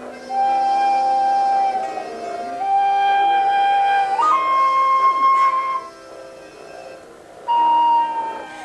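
A small hand-held wind instrument, flute-like in tone, playing slow improvised long held notes. The melody steps up in pitch about four seconds in, then pauses briefly before a new note near the end, with softer sustained lower notes underneath.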